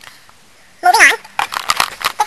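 A person's voice giving a short vocal sound about a second in, with faint clicks and handling noise around it.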